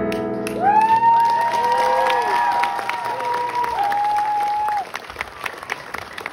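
Audience applause breaking out as the last piano chord of a song dies away, with several long piercing whistles over the clapping. The whistles stop a little before the end, and the clapping carries on quieter.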